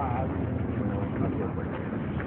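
Indistinct voices of several men talking as they move together, over a low steady hum.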